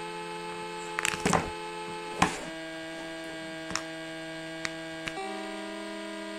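Held background music chords that change every few seconds, over sharp plastic clicks and taps as a phone battery is handled and pressed into its compartment. The loudest snap comes about two seconds in.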